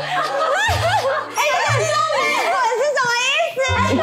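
Upbeat background music with a bass note repeating about once a second, mixed with high-pitched women's voices.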